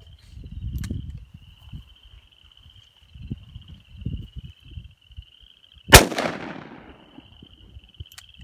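A single shot from a .500 S&W Magnum revolver about six seconds in, a loud report with a tail that dies away over about a second.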